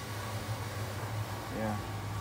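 Steady low hum from workshop equipment, with a man saying "yeah" near the end.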